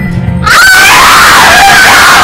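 A very loud, high-pitched scream that wavers and slides in pitch, cutting in about half a second in over music with a low bass line.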